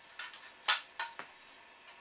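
Handling of a flat metal bracket for a wind-turbine rotor: about five light clicks and clinks, all within the first second and a half.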